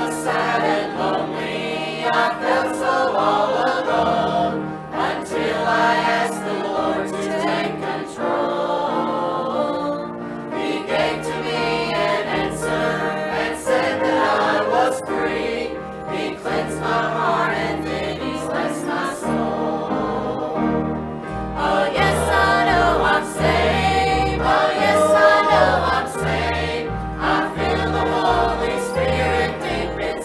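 Church choir singing a hymn with piano accompaniment; deeper bass notes come in about two-thirds of the way through.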